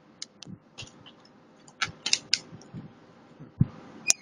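Scattered small plastic clicks and taps, with a couple of soft knocks, from fingers working the keyboard and touchpad ribbon-cable connector latches on an HP Compaq 8510p laptop's motherboard. They come at irregular intervals, about eight in all: the sound of fumbling with a connector that will not seat.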